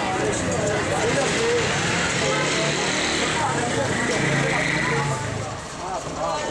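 Busy street ambience: people's voices talking over one another and a motor vehicle engine running close by, its engine note strongest about four to five seconds in.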